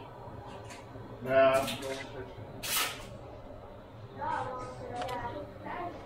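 Banana-leaf-wrapped sticky-rice parcels dropped into a pot of boiling water, with two short splashes about one and a half and three seconds in. A voice speaks briefly in between, over a steady low hum.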